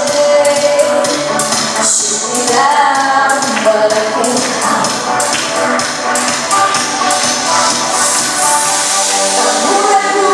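Amplified pop backing track with a steady percussion beat, with a young woman singing into a handheld microphone over it through the PA.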